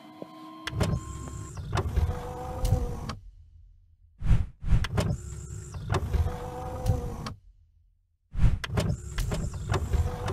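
A mechanical sliding sound effect, a motor-like whine with knocks and clunks like a power window or sliding panel moving. It plays about three times, cut apart by two sudden silences of about a second each.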